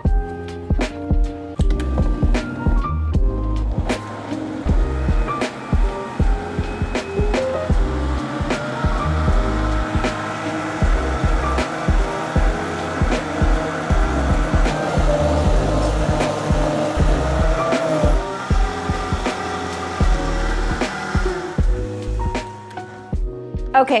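A countertop blender running under background music with a steady beat, blending a thick cream-and-cheese sauce until smooth. The motor starts about four seconds in, runs steadily with a slight rise in pitch and stops a few seconds before the end.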